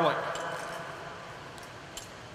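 The end of a man's spoken word dies away in the room's reverberation, leaving faint steady room tone. There is one light tick near the end.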